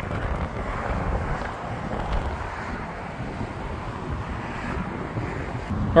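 Wind blowing across the microphone: a steady, rushing noise without distinct events.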